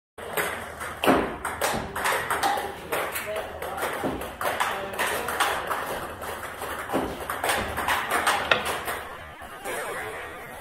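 Table tennis ball clicking repeatedly: the celluloid-type plastic ball bouncing on the table and struck by a rubber-faced paddle in rapid backhand loop and topspin strokes, several sharp clicks a second.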